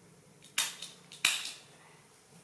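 Two short, sharp rips about two-thirds of a second apart from a disposable diaper's plastic and tape tabs being pulled and fastened.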